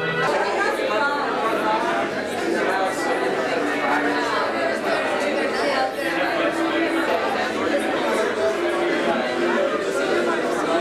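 Many people talking at once in a large room: loud, steady crowd chatter between songs.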